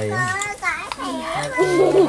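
People talking: voices speaking throughout, with no other sound standing out.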